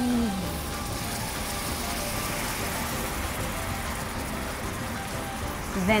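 A hot pan sauce of lamb fat, cognac and caramelized sugar sizzling steadily as cream is poured in and whisked through it.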